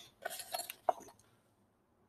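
A cloth carrying case for a handheld meter being opened and handled: a few soft rustles, then one short sharp click just under a second in.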